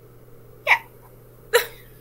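Two short, abrupt bursts from a person's voice about a second apart: a quick "yeah", then a clipped laugh.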